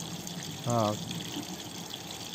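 A brief hesitation sound from a man's voice, a short 'eh' about two-thirds of a second in, over a steady background hiss.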